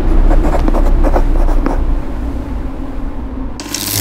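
Trailer soundtrack sound design: a deep low drone under a run of short, scratchy crackles in the first two seconds, fading down, then a sudden burst of hiss near the end.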